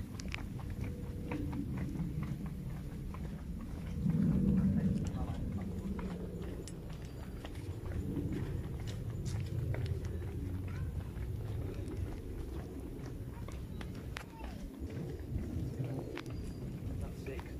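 Muffled, indistinct voices of people talking as they walk, with scattered light clicks of footsteps on a paved path. The voices swell briefly about four seconds in.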